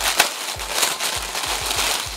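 Clear plastic packaging crackling and crinkling as it is handled and opened, with a low regular beat underneath.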